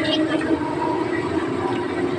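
Steady running noise and hum of a small passenger vehicle in motion, heard from inside its open passenger compartment.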